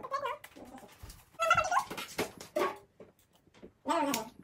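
A small dog, a Pomeranian, whining and yipping in a few short high calls that rise and fall in pitch, with a few light clicks between them.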